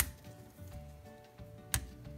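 Two sharp clicks, one at the start and one near the end, of magnets snapping against metal as more are added to a stack used to pull hydraulic valve lifters. Faint background music runs underneath.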